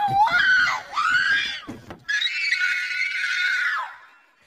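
A child screaming at high pitch and loudly: short wavering screams through the first two seconds, then one long scream held for nearly two seconds that stops just before the end.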